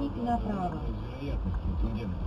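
Speech over a steady low rumble.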